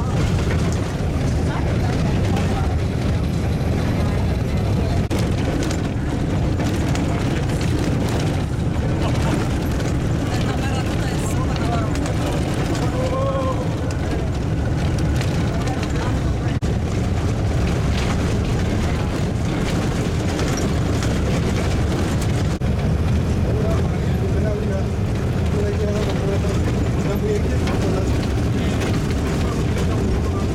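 Steady low rumble inside a coach driving on a gravel road: engine and tyre noise from the unpaved surface fill the cabin, with faint passenger voices in the background.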